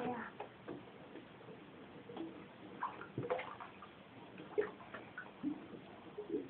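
A toddler playing quietly in bathwater: light water sounds and scattered small taps and clicks, with a few brief soft vocal sounds from the child.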